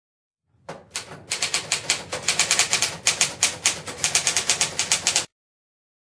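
Typewriter sound effect: a fast, unbroken run of keystrokes lasting about four and a half seconds that starts under a second in and stops abruptly.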